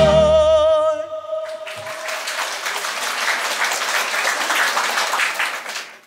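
A male singer holds the song's final long note with vibrato over the band's closing chord, which dies away within about two seconds. Audience applause rises from about a second and a half in and fades out near the end.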